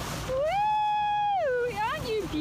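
A person's high-pitched, drawn-out call without words: the voice rises, holds one high note for about a second, then drops away.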